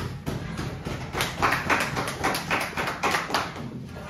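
A small group clapping, a dense patter of claps that grows louder through the middle and eases off near the end.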